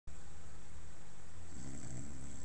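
A boy's put-on snoring: a low, steady drone, a little stronger near the end.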